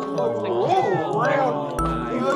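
A kitten meowing, with bending high-pitched calls, over light tinkling background music.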